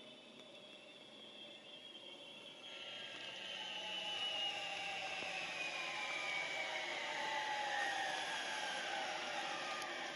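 Zipline trolley pulley running along a wire cable as a rider comes in: a whir that starts about three seconds in and grows louder, its several pitches sliding slowly downward.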